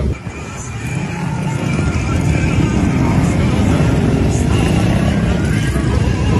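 Cars and motorcycles driving across an open square, a dense engine rumble that grows louder over the first few seconds and then holds.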